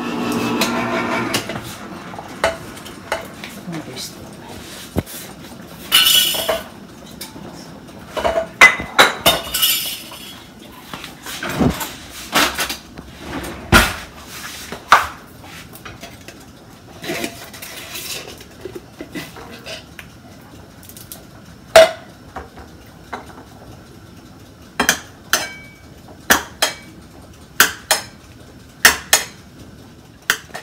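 Cutlery and ceramic plates clinking and knocking on a tiled counter as food is handled, in scattered sharp taps, a few of them ringing briefly.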